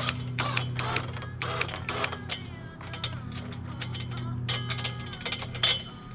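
Ratchet-like metal clicking, irregular and several clicks a second, over a steady low hum that fades out near the end.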